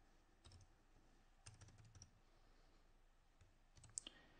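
A few faint, scattered computer keyboard keystrokes against near silence, with a slightly louder click near the end.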